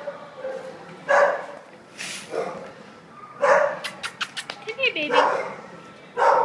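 Kennel dogs barking in separate single barks, roughly one a second, with a quick run of sharp clicks about four seconds in.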